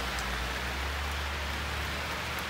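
Steady rain falling on the leaves of a tree overhead, an even hiss with a low rumble underneath.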